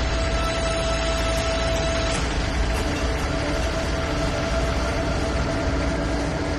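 Sustained drone of dramatic background score: a low rumble under long held tones that slowly change pitch, with a rushing hiss swelling from about two seconds in.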